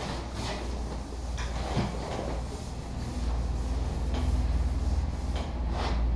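Pen stylus scratching and tapping on a graphics tablet while handwriting, heard as a string of short scratchy clicks over a steady low hum.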